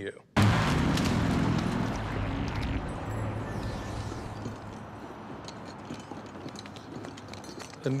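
A truck speeding past: a sudden loud rush of engine rumble and road noise that starts just after the beginning and slowly dies away over several seconds.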